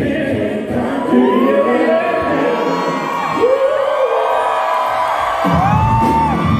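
Live R&B band music with singing and a cheering crowd; the bass and drums drop out at the start, leaving the voices, and come back in near the end.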